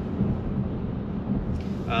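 Steady low road and wind rumble inside the cabin of a 2022 Polestar 2 electric car cruising at highway speed, buffeted by a strong crosswind, with no engine sound.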